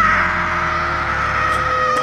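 A singer in the soundtrack song holds one long high note, scooping up into it at the start and then sustaining it steadily.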